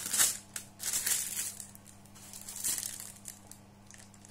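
A cardboard gift box being opened by hand: rustling and crinkling of the lid and paper packing in a few short bursts, near the start, around a second in and near three seconds.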